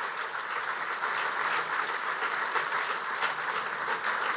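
Audience applauding steadily, a standing ovation filling a large hall, with no break.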